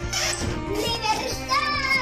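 Children shouting excitedly over background music with a steady beat; the shouts come at the start and again in the second half.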